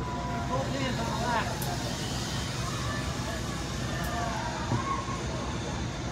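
Voices of people talking in the background over a steady low rumble of outdoor noise.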